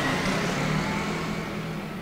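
A motor vehicle engine running steadily, its sound slowly getting quieter.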